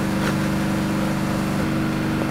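Steady low mechanical hum at a constant pitch, with a faint hiss over it, unchanging throughout.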